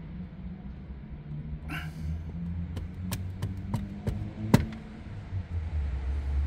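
A string of about eight sharp fingertip taps on a car head unit's touchscreen, coming quickly in the second half, one tap louder than the rest, over a steady low hum. The screen is not responding to touch.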